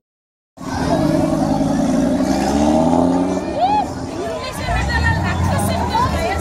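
A car engine running under crowd chatter, with a whoop from the crowd just before the four-second mark. From almost five seconds in, the deep rumble of a Ford Mustang GT's 5.0 V8 comes in as it rolls up. The sound is cut out completely for the first half second.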